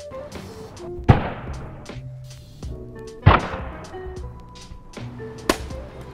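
Three sharp, heavy impacts about two seconds apart: blows striking an ACTICO cycling helmet in a crash test, over background music.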